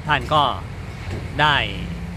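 A man speaking Thai in two short phrases, over a steady low rumble.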